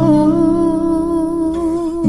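Acoustic cover of a Tagalog love song: a voice holds one long note over acoustic guitar, releasing it near the end.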